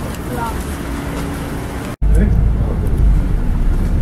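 Street noise on a wet road with faint voices, then after a sudden cut the steady low rumble of a bus engine heard from inside the bus, noticeably louder.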